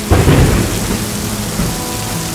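A clap of thunder breaks in sharply just after the start, rumbling deep and loud, then eases into the steady hiss of heavy rain.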